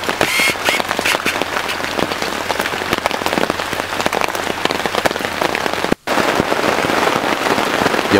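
Heavy rain drumming on a tent's fabric, heard from inside the tent: a dense, steady patter of countless separate drop hits. The sound cuts out for an instant about six seconds in.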